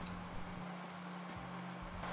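Bridgeport knee mill running with a drill in the spindle, heard as a quiet steady low hum with a few faint ticks.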